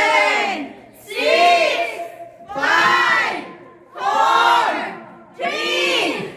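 A group of adults and children shouting together in unison: about five loud calls, evenly spaced about a second and a half apart.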